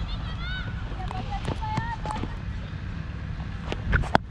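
Players' distant shouts and calls across the field over a steady low wind rumble on the helmet-mounted microphone, with a few sharp knocks, the loudest two near the end.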